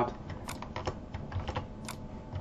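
Light, irregular clicking of a computer keyboard and mouse, about half a dozen sharp clicks over a faint room hum, as a slide's content is selected and copied.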